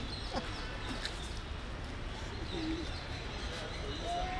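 Steady outdoor background with a low rumble, and a few faint, short bird chirps about a second in and again near the end.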